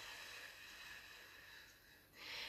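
Near silence with a woman's faint, slow breath during paced breathwork, fading away over the two seconds.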